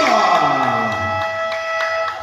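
Basketball scoreboard buzzer sounding one long steady tone that starts suddenly and stops after about two seconds, with a separate pitch sweep falling underneath it through its first second and a half.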